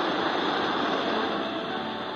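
Portable radio receiving 828 kHz medium wave: weak broadcast music mixed into steady hiss and interference, with a muffled, narrow sound.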